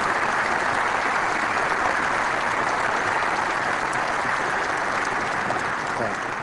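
Large audience applauding steadily, easing off slightly near the end.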